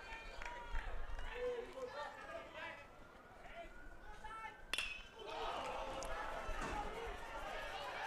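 A single sharp ping of a metal baseball bat striking the pitch about halfway through, fouling it up into the air. A murmur of crowd voices swells just after it, over faint crowd chatter.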